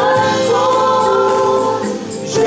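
Live gospel worship band: several voices singing together in harmony, holding one long note over the band, which eases off just at the end.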